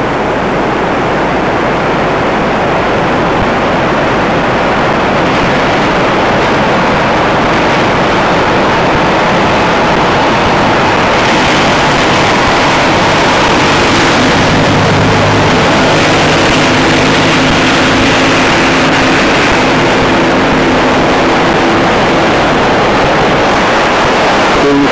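Loud, steady rushing noise of a river in flood. A low hum joins in about halfway through and fades near the end.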